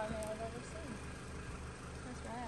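Car engine idling: a low, steady rumble with an even pulse.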